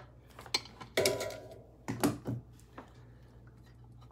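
Close handling noise: a handful of irregular clicks, knocks and short rubs in the first three seconds as a hand works right at the microphone, then only a faint low hum.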